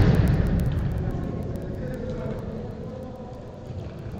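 Large indoor five-a-side football hall: the rumbling tail of a loud hit dies away over the first second, leaving a low, steady hall rumble with faint distant voices of players.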